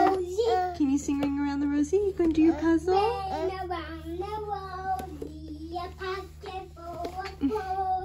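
A young child singing without clear words in a high voice, holding notes and sliding between them, over a low steady hum.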